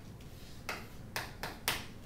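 Chalk striking and scraping on a chalkboard as it is written with: four short, sharp strokes in the second half, the last the loudest.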